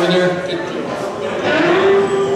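Live band playing in a bar room: a long held pitched note slides up about one and a half seconds in and holds over the guitars.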